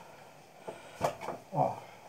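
A few faint, separate knocks and handling noises as a clay pot is handled and shifted on a fired-clay stand, with a brief voice sound near the end.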